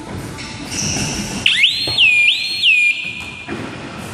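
A shrill whistle blast about a second and a half in, swooping up to a high pitch three times and lasting about two seconds, the loudest sound in the hall's background noise.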